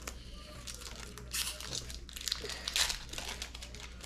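Crinkling and rustling from hands handling and flipping through freshly opened Pokémon trading cards, in irregular short bursts.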